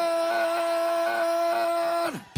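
A man's voice holding one long, steady shouted note, dropping in pitch as it fades out at the end.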